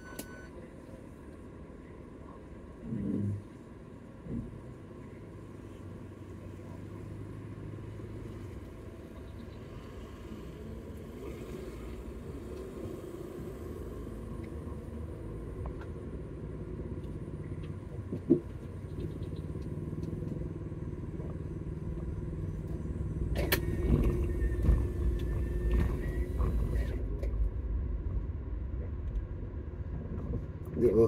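A car's engine and road noise heard from inside the cabin: a low, quiet running at first, then building and getting louder as the car moves off in the last few seconds. There are two short sounds about three and four seconds in, and a sharp knock a little past the middle.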